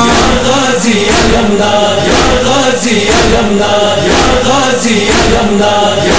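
Male voices singing a noha, a Shia Muharram lament, in chorus over a steady percussive beat of about three strokes every two seconds.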